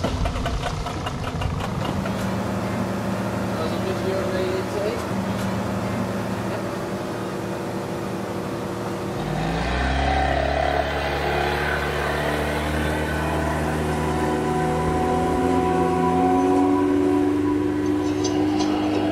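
Yamaha 30 hp outboard motor running steadily, then throttling up about halfway through, its pitch rising as the inflatable tender gets under way and climbing slowly near the end.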